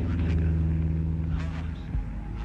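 Live industrial music: a loud, low drone held steady under short hissing, sweeping noises near the start and again about one and a half seconds in. The drone drops away near the end.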